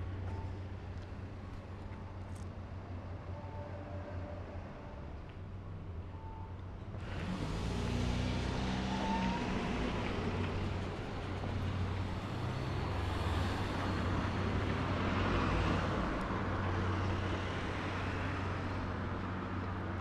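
Street traffic: a low steady hum at first, then from about seven seconds in, vehicles pass close by and their engine and tyre noise swells and stays up.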